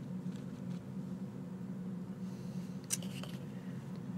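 Quiet, steady low hum of room and equipment noise, with a faint tick about three seconds in.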